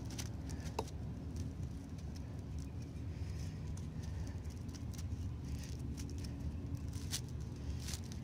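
Faint rustling and scratching of three-strand rope being handled as a strand is tucked under another for a back splice, with a few light ticks, over a steady low hum.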